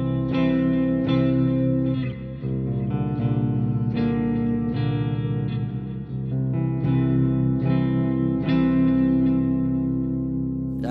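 Valiant Jupiter electric guitar with Bare Knuckle pickups switched to parallel, playing clean chords: a new chord struck about every second and left to ring.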